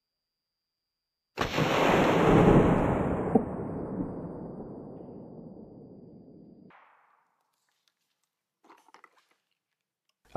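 A single black powder shotgun shot from a 19th-century Sauer & Sohn drilling, heard slowed down: it comes in suddenly about a second in as a long, deep boom that fades over about five seconds and then cuts off abruptly.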